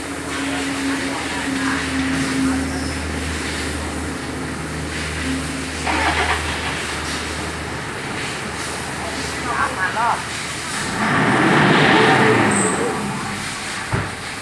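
Toyota Fortuner's diesel engine idling steadily, then revved once near the end, rising and falling over about two seconds, in a test for black exhaust smoke. The engine has begun to knock and blows heavy black smoke.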